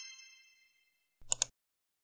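A bright, multi-tone chime sound effect rings out and fades away in the first half second. About a second and a quarter in come two quick sharp clicks.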